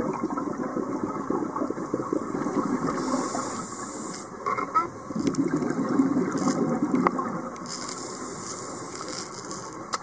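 Scuba diver's exhaled air bubbling out of the regulator in two long gushing bursts of about three seconds each, with quieter stretches between breaths, heard underwater; a couple of faint clicks.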